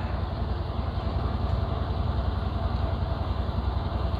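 Steady low hum with an even background hiss, machine-like and unchanging.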